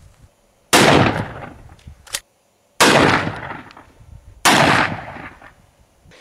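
Three shotgun shots, about two seconds apart, each report trailing off over about a second. The shells are handloaded with 5/16-inch steel ball bearings as buckshot.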